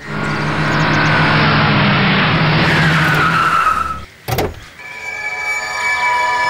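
An SUV's engine running as it drives in and brakes hard to a stop, with a falling tyre squeal as it halts. A single sharp thud follows, then steady held music tones come in near the end.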